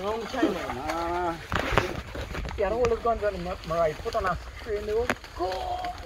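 Men's voices talking and calling, with two sharp cracks, one about two seconds in and one near the end.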